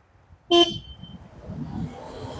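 A car horn gives one brief toot about half a second in, followed by the faint low engine and tyre noise of cars moving through the roundabout.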